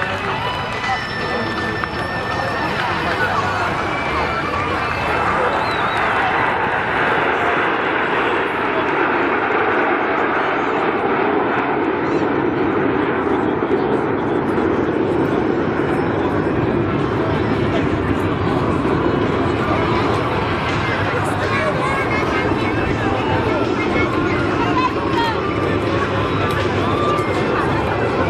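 Jet noise from a formation of PZL TS-11 Iskra jet trainers flying a display. It swells about five seconds in and then holds steady, with crowd voices near the microphone.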